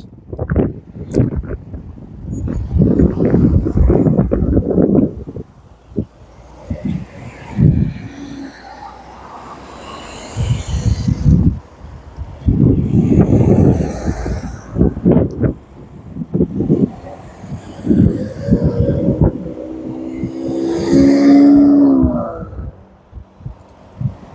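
Several cars driving past at close range around a roundabout, engine and tyre noise swelling and fading one after another, with rough buffeting on the microphone. Near the end one car's engine note drops slightly in pitch as it goes by.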